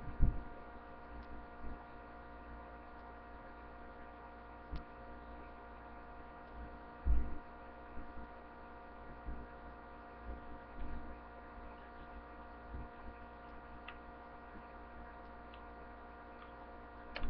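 Steady electrical mains hum, a stack of even tones, broken by soft low bumps and a few light clicks from hands working on a table, the loudest bump about seven seconds in.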